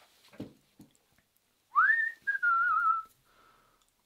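A man whistling briefly, about two seconds in: a quick upward glide, then a wavering note that drifts slightly down and fades.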